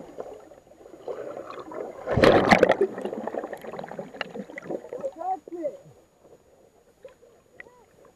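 Water sloshing and gurgling around an underwater camera, with a loud rush of bubbles about two seconds in. Short, muffled, pitched vocal sounds follow in the second half.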